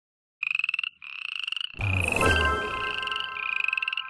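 Frog croaking in rapid pulsed trills, three bursts in all, as a logo sound effect. About two seconds in, a low thump with a falling whoosh comes in, followed by steady ringing tones that carry on under the last croak.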